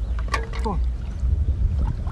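Water sloshing as a plastic bottle trap is handled in shallow floodwater, under a steady low rumble of wind on the microphone. A short voice-like sound comes about half a second in.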